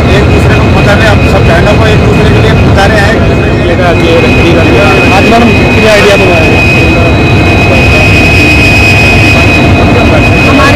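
Steady, loud low rumble of a locomotive standing and running, with a thin high whine that grows stronger about six seconds in, under people talking.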